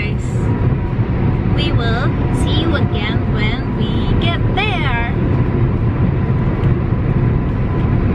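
Steady low road and engine rumble heard inside a moving car's cabin, with a woman's high, sliding voice in short bursts between about one and a half and five seconds in.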